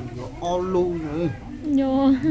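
People talking in a high-pitched voice, in short phrases that rise and fall.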